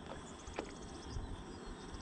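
Faint cricket chirping: short runs of rapid, high-pitched ticks. A low rumble runs underneath, and there is one light click about half a second in.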